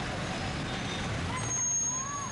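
Busy downtown street traffic: the steady din of idling trucks and vehicle engines mixed with crowd voices. A thin, high, steady tone comes in about a second and a half in.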